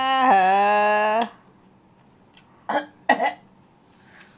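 A woman's drawn-out wailing cry, just over a second long, as she reacts to the sourness of a sauce-dipped lime piece in her mouth. Two short coughs follow about half a second apart.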